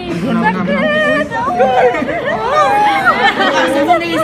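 Several voices talking over one another, with some rising and falling high-pitched exclamations.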